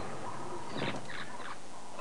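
A few faint short bird calls about a second in, over steady outdoor background noise.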